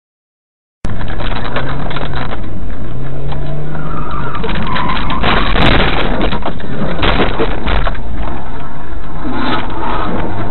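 Car engine and road noise as picked up by a dashcam, starting abruptly about a second in; the engine note rises and falls.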